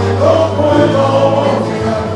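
Live Cuban son band playing, with several voices singing over a steady bass line, heard from the street outside the venue's open entrance.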